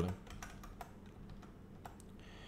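A few faint, scattered clicks over a low steady hum.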